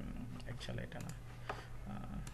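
A few scattered clicks from a computer keyboard and mouse, over a steady low hum.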